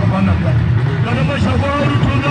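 A voice singing over music, with a heavy, steady low backing underneath; the sung notes are held and bend in pitch.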